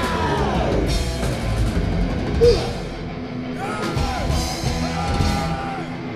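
Thrash metal band playing live: distorted electric guitars over a fast drum kit, with a lead guitar line bending and sliding in pitch. A brief loud accent about two and a half seconds in.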